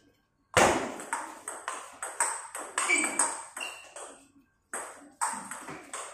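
Table tennis rally: the celluloid ball clicks off the paddles and the table in quick alternation, about three hits a second. There is a short pause past the middle, then a few more hits.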